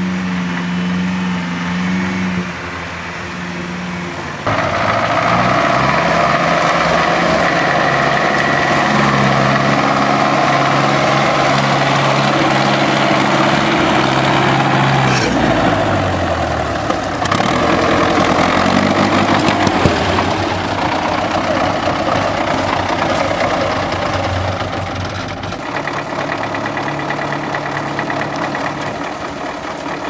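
GAZ-66 off-road truck's engine running and revving while working through boggy ground. The sound jumps abruptly louder about four seconds in and changes again twice later on.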